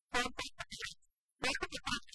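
A woman's voice speaking Telugu film dialogue in two short phrases, with dead silence between them.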